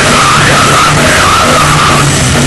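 Hardcore band playing live at high volume: a held low note under a wavering high squeal.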